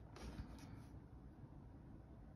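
Near silence: room tone, with a faint soft rustle in the first second.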